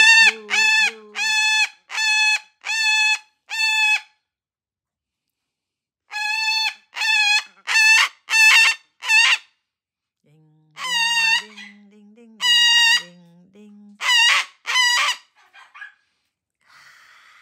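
A white cockatoo giving a run of loud, harsh squawks, about two a second, in three bouts separated by short pauses.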